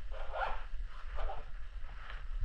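Rasping rustle of clothing close to a body-worn camera, two brief scrapes about a second apart over low thumps of handling and movement.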